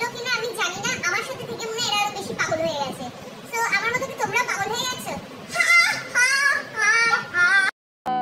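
High-pitched, playful sing-song voices of young women chanting and chattering, growing louder and higher for the last couple of seconds, then cut off abruptly just before the end.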